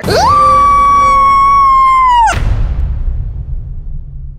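A woman's long, high-pitched scream rises quickly and holds one steady pitch for about two seconds, then breaks off with a downward drop. A burst and a low rumble follow and fade out.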